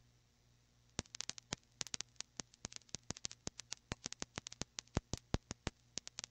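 Irregular crackling clicks, several a second, begin about a second in, over a faint low hum: crackle on an old tape recording.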